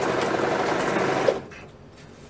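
Serger (overlock machine) running at speed as it finishes a sleeve seam on a knit shirt, then stopping abruptly a little over a second in.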